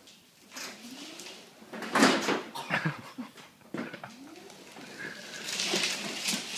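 Electric mobility scooter's drive motor whining, its pitch sliding up as it speeds up, twice. A few sharp knocks and bumps come in between, around two to four seconds in.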